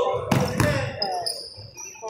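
A basketball bouncing on a hardwood gym floor, with a couple of sharp bounces in the first second, over spectators' voices echoing in the gym.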